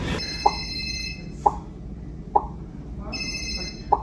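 Electronic feedback sounds from an interactive touch-screen therapy board as its targets are touched: four short pops at irregular intervals, and twice a brief chord of high electronic tones.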